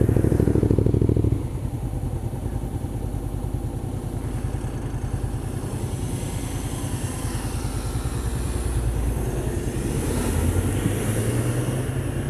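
Honda CB500X's parallel-twin engine running at low revs, with a car passing close by during the first second or so. The engine picks up a little near the end.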